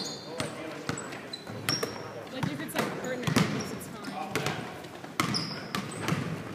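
Basketball bouncing on a hardwood gym floor in irregular thuds, with a couple of short sneaker squeaks and voices in the reverberant hall.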